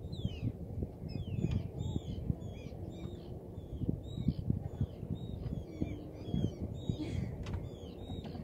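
Birds calling: many short, quick calls in a rapid, overlapping series. Wind rumbles on the microphone underneath.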